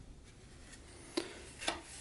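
Quiet room tone with a faint sharp click a little past halfway and a softer one near the end: light handling noise from hands holding a small wooden model.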